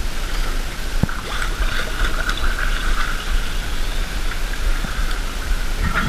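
Water sloshing and splashing close to the camera at the surface, a steady wash of noise over a constant low rumble, with a sharp click about a second in.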